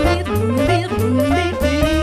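Upbeat pop song with a saxophone lead playing short phrases that slide upward, over bass and drums.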